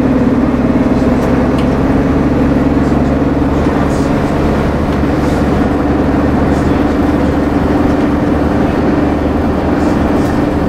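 Leyland Titan double-decker bus running on the road, heard from inside the lower deck: a loud, steady engine and drivetrain drone whose pitch rises slightly as the bus gathers speed, with a few light rattles.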